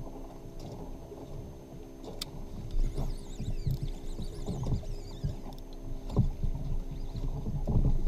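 Water slapping and knocking against a fishing kayak's hull, picked up through the boat, with irregular low thumps as the angler works the rod and reel.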